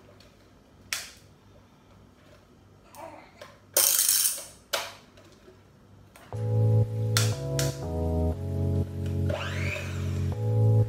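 Quiet kitchen handling sounds, a sharp click about a second in and a brief louder clatter near four seconds, then background music with keyboard-like notes starts about six seconds in and becomes the loudest sound.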